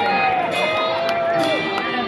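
Live band with electric guitars, bass and drums playing through the PA, carrying a long held melody note that slides down slightly, then a second held note that ends about one and a half seconds in.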